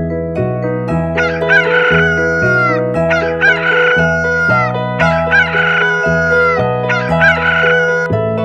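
A rooster crowing cock-a-doodle-doo about four times, roughly every two seconds, over background music.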